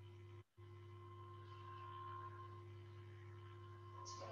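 Faint steady electrical hum with a few held tones, the background noise of a newly opened microphone line on an online call; it cuts out for a moment about half a second in.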